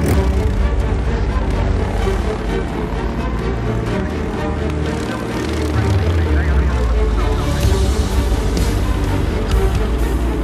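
Background music with a steady low beat, mixed with the buzz of racing ride-on lawnmower engines.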